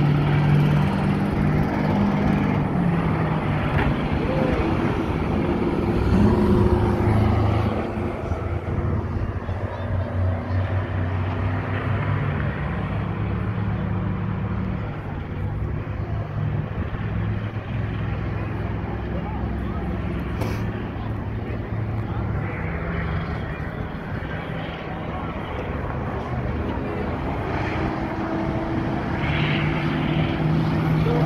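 Several racing school bus engines running on the track, their pitch rising and falling as the buses accelerate and slow through the turns, under the steady chatter of a grandstand crowd.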